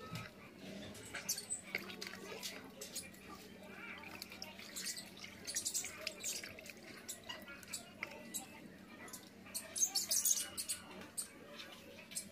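Water sloshing and splashing in a plastic bucket as a pigeon is held down and bathed by hand, in irregular bursts, loudest about ten seconds in. A faint steady hum runs underneath.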